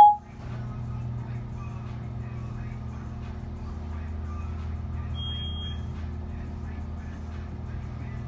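A short electronic chime from the Alpine iLX-207's Siri (Apple CarPlay) through the display's speakers at the very start, then a steady low hum of room noise with faint background music while Siri lags, and a brief high beep about five seconds in.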